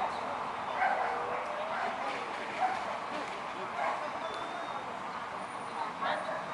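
A corgi barking several times in short bursts, with people's voices in the background.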